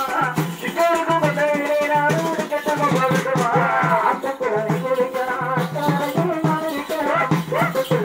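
Tamil folk melam band playing dance music: a wavering, reedy melody line over a steady drum beat, with rattling cymbal or shaker percussion.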